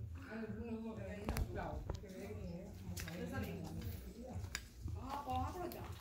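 Indistinct voices of people talking quietly in the background, with a few sharp clicks.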